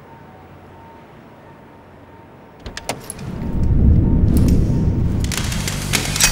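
A few sharp clicks, then a car engine revving hard and loud from about halfway through.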